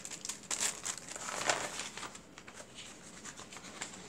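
Paper crinkling and rustling as a brown kraft-paper mailer is handled and opened, busiest in the first couple of seconds, then fainter.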